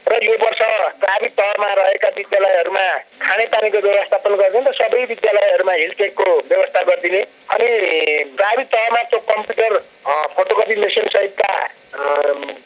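Speech only: a person talking steadily with short pauses, with the thin, narrow sound of a radio broadcast.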